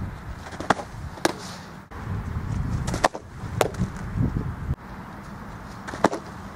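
Softballs smacking into a catcher's mitt: sharp leather pops, coming in pairs about half a second apart, several times.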